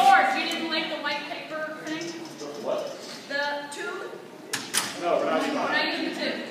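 Voices talking throughout, the words indistinct, with a couple of short sharp clicks about four and a half seconds in.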